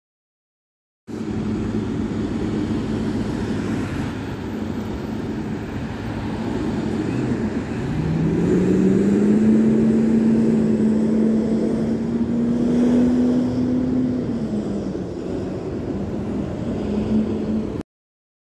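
Otokar city bus howling: sound starts about a second in, then a whine rises in pitch about halfway through, holds steady for several seconds and drops away near the end, over the bus's steady running noise.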